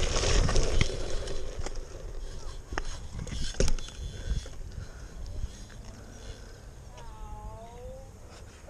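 BMX bike tyres rolling over a gravel path with wind on the microphone and a few sharp knocks of the bike jolting, loudest in the first four seconds and quieter once the bike reaches smooth tarmac. Near the end a faint distant call is heard.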